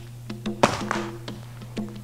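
A front stomp kick striking a Thai pad: one sharp thud about two-thirds of a second in, over steady background music.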